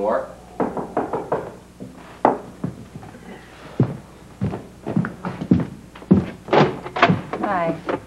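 Knocks and thuds of a wooden door being knocked on, footsteps crossing the room, and the door being opened. A brief "hi" comes near the end.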